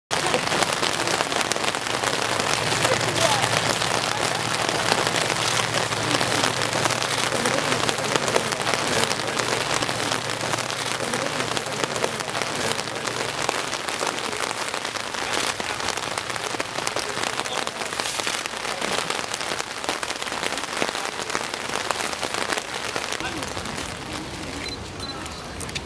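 Steady rain falling close to the microphone, a dense hiss made of many small drop hits.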